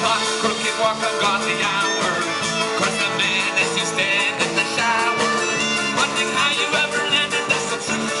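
Live folk-rock band playing: fiddle with acoustic guitar, electric bass and drum kit.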